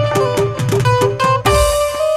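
Qawwali instrumental music: harmonium playing a held-note melody over tabla strokes, with the low drum's pitch gliding down after several strokes.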